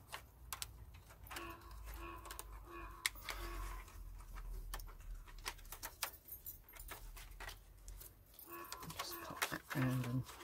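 Galvanised chicken wire netting clicking and rattling in irregular small ticks as it is squeezed and folded by hand around a plastic bottle.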